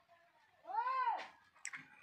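A single meow-like call, rising then falling in pitch, lasting under a second about halfway through, followed by a brief faint chirp.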